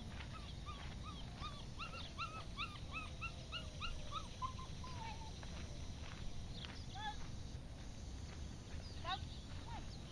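A dog, the Norwegian elkhound being trained, giving a quick run of short high-pitched yips, about three a second, for the first five seconds, then a few more later on.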